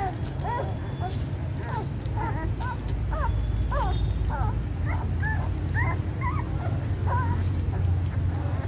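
Newborn puppies squeaking and whimpering while they nurse, many short high squeaks rising and falling, several a second and overlapping, over a steady low rumble.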